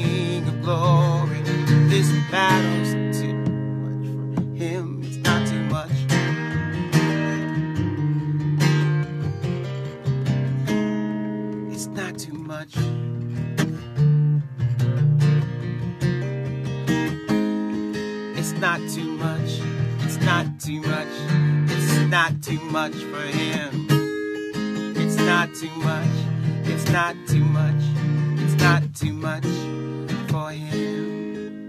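Acoustic guitar with a capo, strummed in chords that ring on between the strokes.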